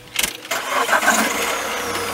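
Car engine started with the key: a click about a fifth of a second in, then the engine cranks and starts running.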